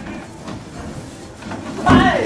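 Low hall background, then near the end a karate fighter's loud kiai shout, its pitch falling, as he launches his attack.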